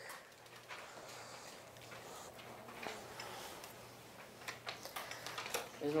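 Sheets of paper being folded in half: faint rustling with a few light ticks and taps, most of them near the end.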